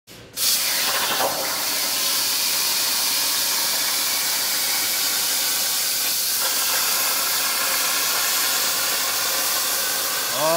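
Tormach 1300PL CNC plasma table's torch cutting metal plate: the plasma arc gives a steady, loud hiss that starts abruptly about half a second in.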